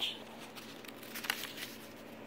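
Paper pages of a small handmade journal being turned and smoothed flat by hand: a few faint rustles and soft handling noises.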